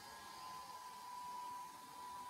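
Faint hiss with a thin, steady high-pitched tone held unbroken throughout.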